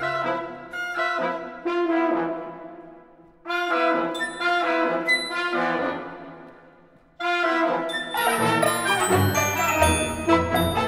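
Orchestral music from a symphony orchestra: phrases that fade away, with two near-pauses about three and seven seconds in, then a fuller passage near the end.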